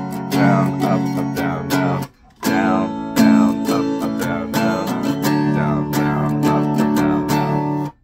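Steel-string acoustic guitar, capoed at the second fret, strummed in a down-down-up-up-down pattern with the chords ringing between strokes. The playing breaks off briefly about two seconds in.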